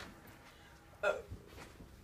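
A person's short vocal "ohhh" about a second in, falling in pitch.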